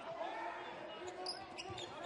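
Live basketball game sound in an arena: a basketball bouncing on the hardwood court over a steady murmur of crowd voices.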